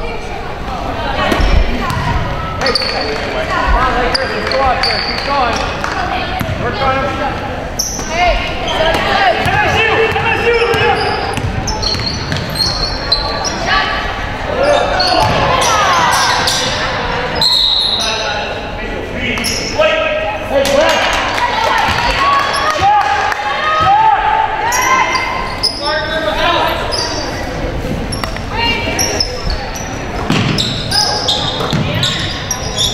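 Basketball being dribbled on a hardwood gym floor during live play, amid players, coaches and spectators calling out, all echoing in a large gymnasium.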